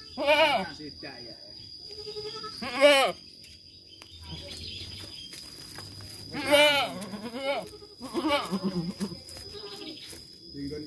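Goats bleating: three loud, wavering bleats, at the start, about three seconds in and about six and a half seconds in, with further calls near the end.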